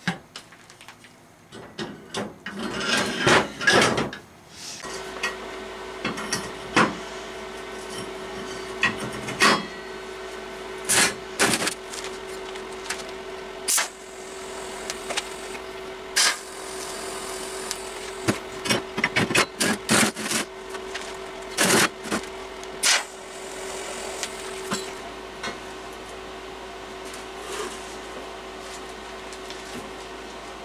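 TIG welding on a steel frame: the welder gives a steady hum that starts about five seconds in, broken by frequent short clicks and knocks of metal parts being handled. Before the hum, a cluster of loud knocks and clatter from steel parts being set on the bench.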